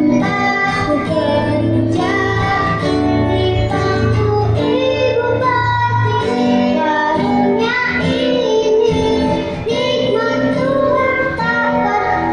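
A young girl singing a song while accompanying herself on an acoustic guitar.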